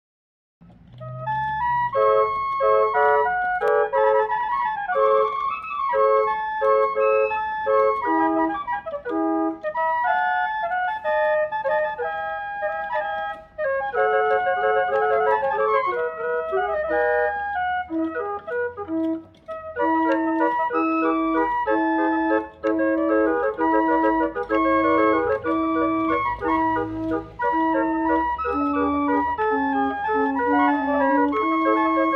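Davrainville salon barrel organ playing a tune from its pinned wooden cylinder on a single rank of 26 Viennese flute pipes, driven by fusee clockwork. The music starts about half a second in.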